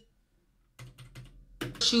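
Dead silence, then about a second in a short run of faint computer-keyboard key clicks as the paused video is skipped back. A woman's voice starts again near the end as the video resumes.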